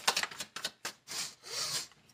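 A deck of tarot cards shuffled by hand: a few short, papery sliding strokes of card against card, with brief gaps between them.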